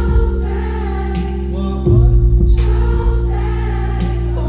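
Live song played loud through a club sound system: a male singer's voice over a deep, sustained bass line and drum hits. The bass steps up louder about two seconds in.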